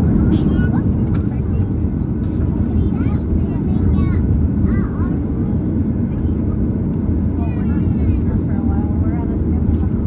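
Cabin noise of a Southwest Boeing 737 taxiing after landing: a steady low rumble of engines and airframe, with faint passenger voices chattering under it.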